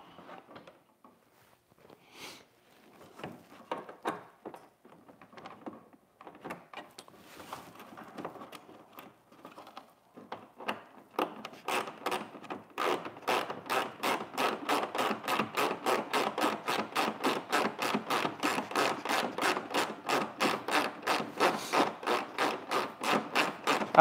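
Small quarter-inch drive ratchet clicking as bolts are run in: an even train of clicks, about four a second, starting about eleven seconds in and settling at a steady level. Before it, scattered light knocks and rubbing of parts being handled.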